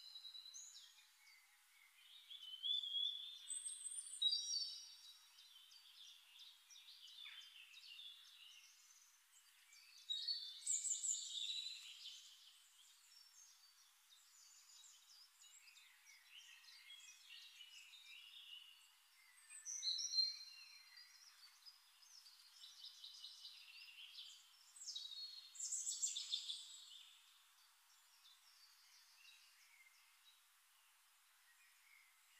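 Small birds chirping and twittering, high and thin, in several bouts of song a few seconds apart.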